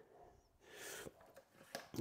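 Very quiet, with one soft breath near the microphone about half a second in, lasting about half a second, and a couple of faint clicks near the end.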